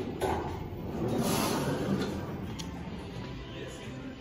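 Schindler 3300 elevator doors sliding open, a noisy sliding sound that starts just after the beginning, is loudest between about one and two and a half seconds in, then fades.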